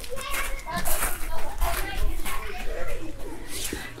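Children playing on a playground, their voices and calls scattered and more distant than a close speaker.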